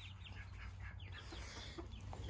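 A group of young chicks peeping, a scatter of short, faint, falling chirps over a low steady hum.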